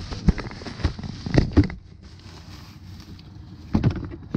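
Plastic shopping bag rustling and crinkling as a hand rummages in it, with a few sharp knocks from bottles being handled, mostly in the first two seconds and once near the end, over light wind on the microphone.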